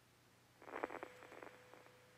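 A brief burst of crackling clicks about half a second in, dying away after about a second, like static on a radio line. A faint steady tone starts under the crackle and holds on, over a low hum.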